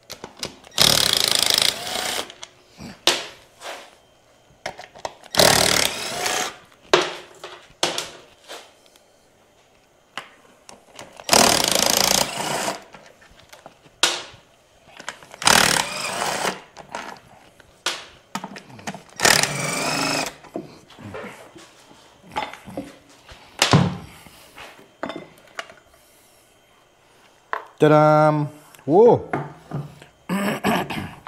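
Cordless impact wrench undoing the bolts of a Honda S-Wing 125 scooter's transmission (CVT) cover, in about five bursts of a second or two each, with small clicks of tools and bolts between them.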